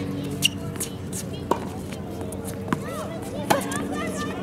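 Tennis balls being struck by rackets and bouncing on a hard court during a rally: four sharp pops, roughly a second apart.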